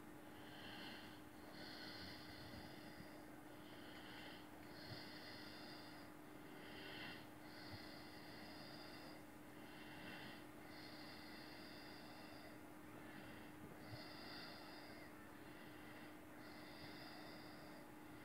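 Coloured pencil shading on paper: faint, scratchy strokes repeating about once a second, over a low steady hum.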